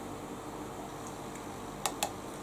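Quiet drinking through a silicone straw over a steady low room hum, with one short click near the end.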